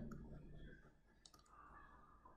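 Near silence: faint room tone with a few faint clicks a little over a second in, from a computer mouse being clicked while handwriting in Paint.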